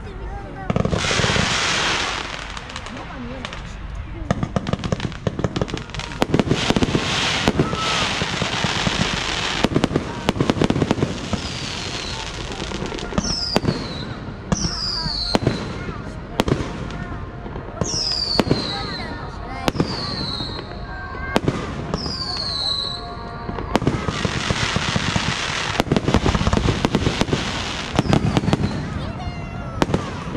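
Fireworks display: aerial shells bursting with repeated sharp bangs and spells of crackling. Between about 13 and 23 seconds a run of short whistles falls in pitch.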